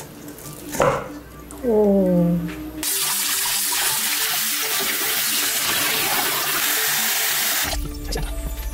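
Kitchen tap water running into a stainless steel bowl of beef short ribs as they are rinsed by hand. The steady rush starts about three seconds in and cuts off shortly before the end.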